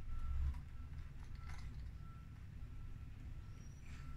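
Soft clicks of a plastic lure package being handled and opened, over a faint low rumble and a quiet beep repeating at one steady pitch.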